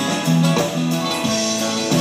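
Live band music led by a strummed acoustic guitar with electric guitar, in a gap between sung lines.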